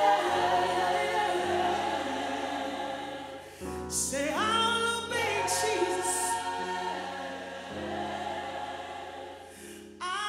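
Large youth gospel choir singing held chords. About four seconds in the voices dip, then slide up together into a new, louder phrase.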